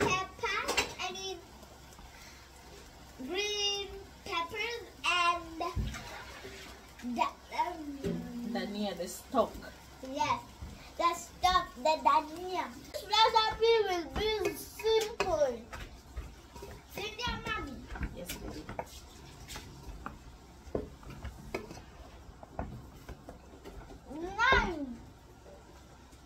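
A young child's voice talking in short spurts, with a single knock about six seconds in.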